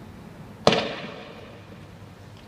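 A single sharp bang about two-thirds of a second in, followed by an echoing tail that dies away over about half a second.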